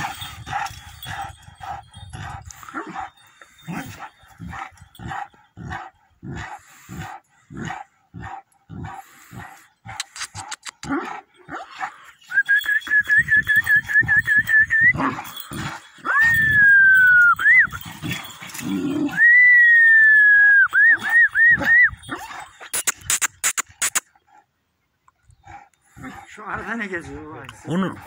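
Dog barking steadily about twice a second for roughly the first ten seconds, then giving long high-pitched whines, one falling in pitch and the last breaking into quick wavers. The barking is aimed at a newly arrived dog it does not like.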